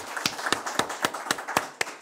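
A small group applauding, with the separate hand claps heard distinctly, about four a second. The clapping thins out near the end.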